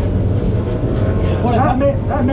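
Late model race car's V8 engine running on track, heard from inside the cockpit as a steady, loud rumble. Its pitch wavers in the second half.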